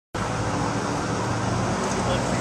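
City street traffic noise: a steady wash of car and engine sound with a low hum underneath.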